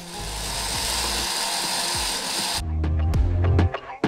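Moulinex countertop blender running at speed on soaked nuts, dates and hot water, a steady whirring noise that cuts off suddenly a little over halfway through. Background music with a beat follows.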